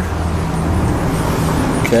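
A steady low hum of an engine running at idle, with a faint hiss over it.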